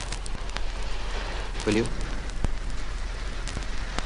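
Steady hiss and hum scattered with crackling clicks, the worn soundtrack of an old film, under a man's short line of dialogue.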